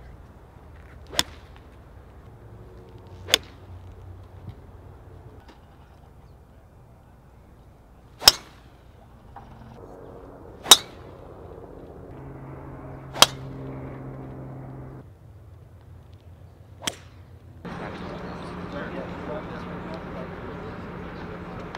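Golf clubs striking balls off the tee: six sharp, crisp cracks of clubface on ball, several seconds apart.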